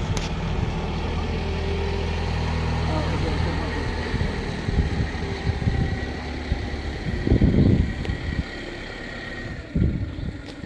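An engine idling steadily for the first few seconds, then fading, under people's voices. A short, loud low rumble comes about seven seconds in.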